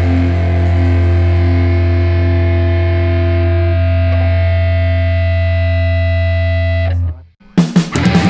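Distorted electric guitar holding a sustained chord over a steady low drone, which cuts off about seven seconds in. After a brief silence, loud distorted heavy rock with drums starts up again.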